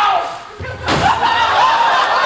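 A single heavy slam just under a second in, led in by a brief low rumble, over indistinct voices.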